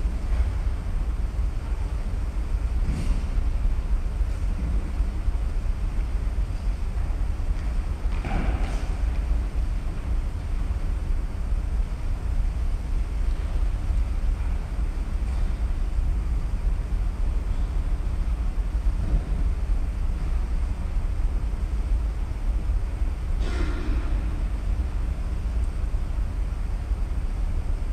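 Steady low rumble of room noise in a large, empty church, with a few faint knocks and clicks, around three, eight and twenty-three seconds in.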